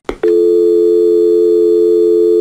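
Telephone dial tone: a short click, then a steady, continuous hum of two low tones blended together, without the on-off pauses of a busy signal.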